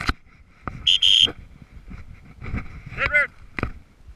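A dog training whistle gives one short, steady, high blast about a second in, a hunter signalling his bird dog during a retrieve. Near the end comes a brief high-pitched call, with footsteps crunching through dry brush throughout.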